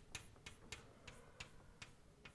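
Chalk writing on a blackboard: a faint string of short, irregular clicks as the chalk strikes and taps the board.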